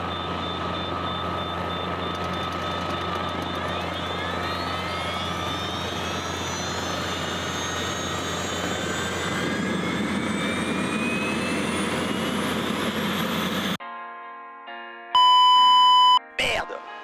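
Rolls-Royce APU gas turbine, taken from a Tornado and fitted in place of the usual Lycoming piston engine in a modified Robinson R22, running with a steady roar and a high whine that climbs slowly in pitch as it speeds up. It cuts off suddenly near the end, and a short musical jingle with sustained tones follows.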